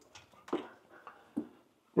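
A few faint footsteps on a stone floor, three or four soft taps spaced irregularly, in a small stone-vaulted room.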